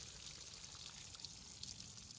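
Faint, steady patter of water sprinkling from a watering rose onto compost and soil, pre-soaking the bed.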